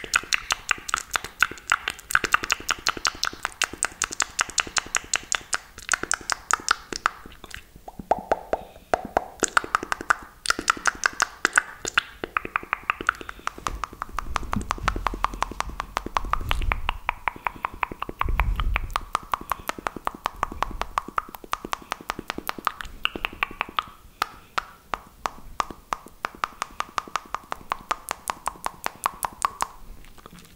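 Fast fingernail scratching and tapping right on a microphone: a dense run of sharp clicks and scrapes, several a second. Deep thuds from gripping the microphone come through near the middle.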